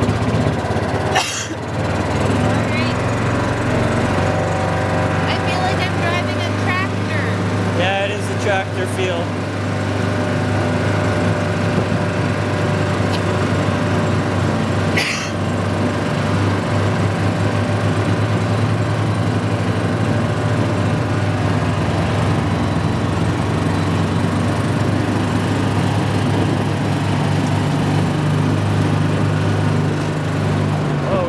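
Gator utility vehicle's small engine running steadily as it drives, with two sharp knocks, one about a second in and one about halfway through.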